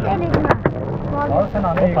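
Table football game: a quick run of sharp clacks about half a second in as the plastic rod figures strike the ball and the rods knock against the table, with players calling out.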